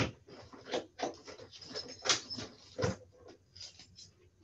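Irregular soft knocks, clicks and rustles, a few a second, the loudest about two seconds in.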